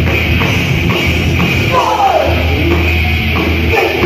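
Crossover thrash band playing live at full volume: fast drums, distorted guitars and bass, recorded from within the crowd.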